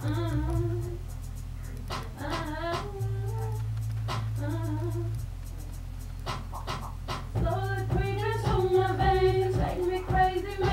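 A song with a woman singing over a backing track of steady bass notes and light percussion clicks. The singing is sparse at first, then fuller and louder from about three-quarters of the way in.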